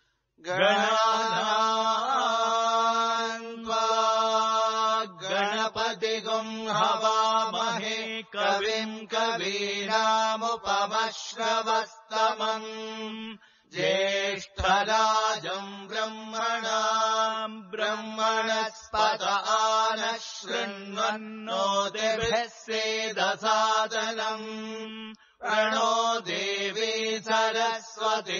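Vedic mantras chanted in Sanskrit, sung in phrases held on a few steady pitches, with short breath pauses between phrases.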